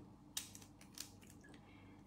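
Near silence: faint room tone with two small clicks, the first about a third of a second in and a weaker one about a second in.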